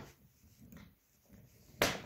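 Zipper pulls of a hard-shell suitcase snapping into its built-in TSA combination lock: one sharp plastic click near the end, after faint handling sounds.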